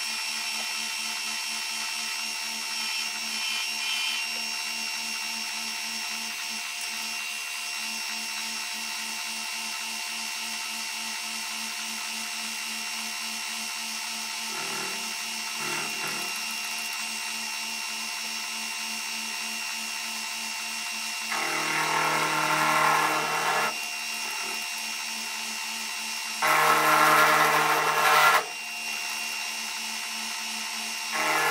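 Benchtop milling machine running steadily with a whining spindle motor. A coated end mill cuts into a small part held in the vise, with two louder spells of cutting, one about two-thirds of the way in and a louder one near the end.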